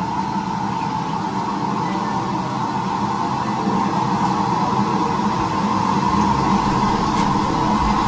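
Steady, unbroken mechanical rushing noise in a busy kitchen, growing slightly louder toward the end.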